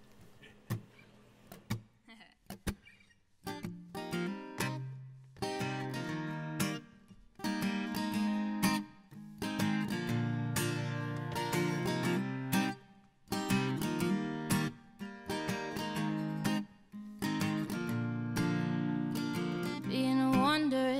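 Acoustic guitar playing a song's instrumental introduction. A few soft single plucks come first, then from about three seconds in, chords are strummed in a steady rhythm with brief breaks between phrases.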